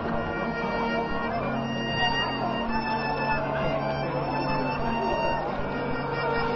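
High school marching band playing long, held chords in the horns and woodwinds, coming in right at the start.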